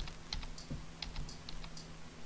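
Buttons clicking, about half a dozen short presses spread over two seconds as a menu is stepped through, over a low steady hum.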